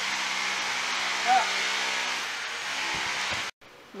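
A steady mechanical hum with a hiss over it, like an engine running at constant speed, cut off sharply about three and a half seconds in.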